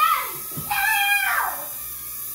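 A young child's drawn-out, high-pitched squeal, about a second long, dropping in pitch at its end.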